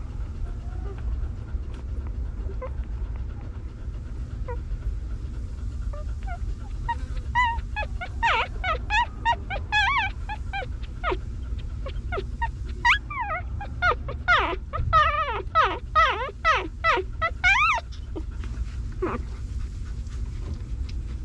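Newborn puppies squeaking and whimpering in a quick run of short, high cries that rise and fall, starting about six seconds in and stopping shortly before the end, over a low steady rumble.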